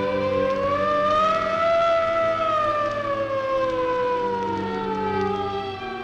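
An emergency vehicle's mechanical siren sounds one long wail: its pitch rises over the first two seconds, then slowly winds down.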